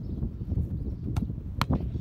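Two sharp thuds about half a second apart in the second half. They are a football being struck in a goalkeeper shot-stopping drill and the keeper's diving save, heard over a low steady rumble of wind on the microphone.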